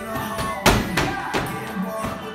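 Background music playing, with a sharp medicine-ball thud about two-thirds of a second in and two fainter knocks after it.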